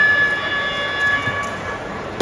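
Basketball scoreboard horn sounding one steady, high-pitched blare that stops near the end, over the noise of a gym crowd.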